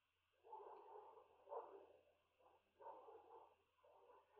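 Near silence: room tone, with a few faint, short sounds.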